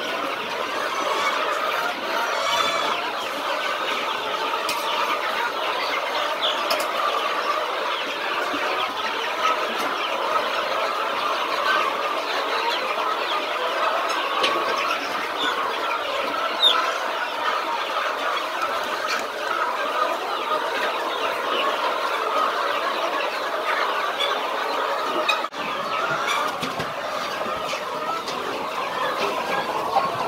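A flock of chickens clucking and calling, many birds overlapping in a steady chatter, with a brief drop in level near the end.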